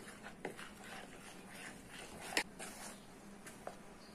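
A hand squishing and rubbing flour into a wet mix in a plastic bowl, bringing a bread dough together: soft rustling and squelching with scattered light clicks, and one sharper knock against the bowl a little past halfway.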